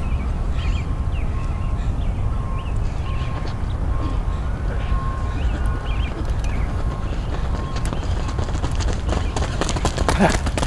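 Sprinters' footsteps on a rubber track as a group drives out of the starting blocks, a patter that grows over the second half. Scattered bird chirps over a steady low rumble.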